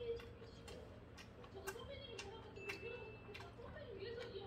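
A person chewing a mouthful of food close to the microphone: irregular wet mouth clicks and smacks, a few each second, over a faint wavering hum.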